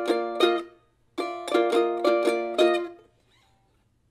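F-style mandolin picked in short phrases of chord-shape melody notes: one phrase ends just under a second in, a second starts a moment later and rings away at about three seconds.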